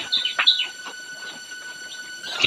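Small birds chirping in quick notes in the first half-second, then a quieter stretch with only a faint steady tone.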